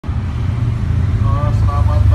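A loud, steady low rumble, with a faint voice briefly in the second half.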